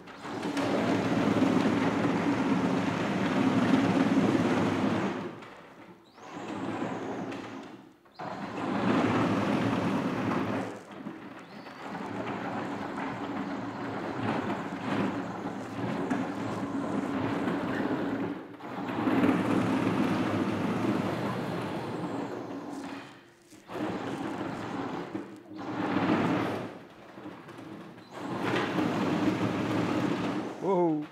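Brushless electric motors driving a large 3D-printed tank through chain-and-sprocket reduction boxes, the drive running with a steady hum under a rough rattling noise. It comes in runs of a few seconds with several brief stops as the rig is driven and halted.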